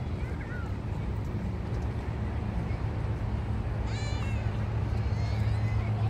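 Outdoor ambience: a steady low rumble, with a short high-pitched call about four seconds in and fainter high calls shortly after.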